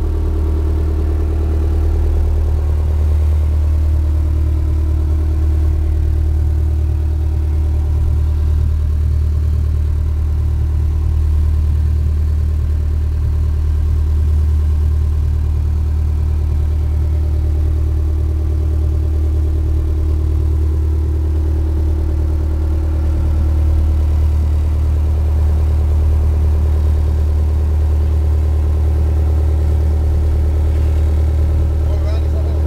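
Fishing trawler's inboard diesel engine running steadily at about 1000 rpm, heard from inside the wheelhouse as a constant low hum.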